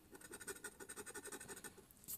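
Faint, quick scraping of a scratch-off lottery ticket's coating with a flat scraper tool, in short strokes at about six a second.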